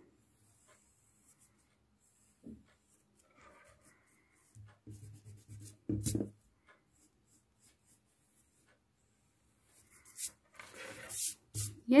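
Pencil drawing on paper in short, scattered scratches, with a hand rubbing across the sheet. The loudest rustle comes about six seconds in, and a longer run of scratching comes near the end.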